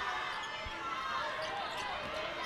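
Basketball arena ambience: a low crowd murmur, with a ball bouncing on the hardwood court, one thud about two-thirds of a second in.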